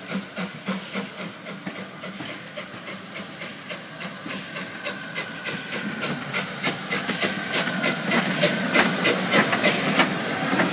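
LBSC A1X Terrier 0-6-0 tank steam locomotive approaching and passing close by: regular exhaust chuffs early on give way to a steady steam hiss that grows louder as it nears. Clicks of its wheels over the rail joints come near the end.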